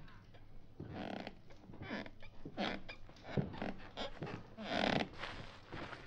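Sound effects of someone climbing down a wooden ladder from a hayloft: a string of irregular rustles and creaks, louder near the middle and again just before the end.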